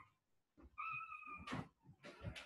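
A faint, steady high-pitched tone held for a little under a second, cut off by a sharp click.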